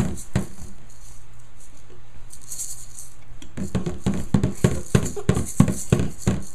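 Toy maracas shaking, with a drum being beaten along; about halfway through the beat picks up into a fast, even run of about four strokes a second.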